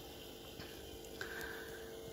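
Faint background ambience in a pause: a steady low hum with a soft click a little past a second in, followed by a brief faint higher tone.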